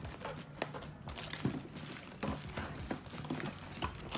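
Clear plastic storage tubs and small makeup-kit items being handled and shifted about in an aluminium train case: irregular light clicks, knocks and rustling.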